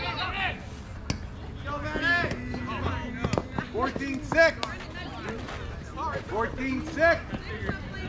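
Players' voices shouting and calling out across an outdoor softball field, over a steady low outdoor rumble, with a few sharp knocks in between.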